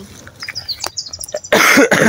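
A person coughing once, sharply and loudly, about a second and a half in.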